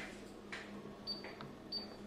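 Faint clicks of front-panel keys being pressed on an SMO1102E digital storage oscilloscope, with two short high-pitched beeps from the scope, about a second in and near the end. A steady low hum runs underneath.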